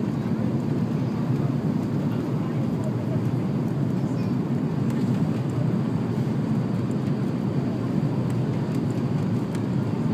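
Steady low rumble of an airliner's underwing jet engines and airflow, heard from inside the passenger cabin.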